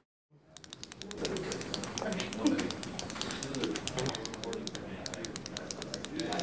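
Fast clicking of typing on a computer keyboard, starting about half a second in after a moment of silence, over a murmur of voices.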